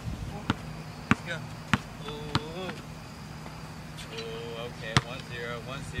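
Basketball bouncing on an outdoor hard court: four bounces about 0.6 s apart in the first two and a half seconds, then one sharper bounce near five seconds.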